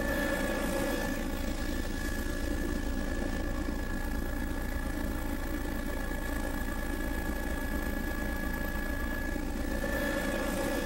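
An aircraft's engine and propeller drone steadily, heard from on board during low, slow flight, with a thin constant whine above the rumble.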